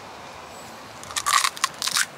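Crisp crunching as a bite breaks the shell of a deep-fried puffed poppadom ball: a quick run of sharp cracks starting about halfway in.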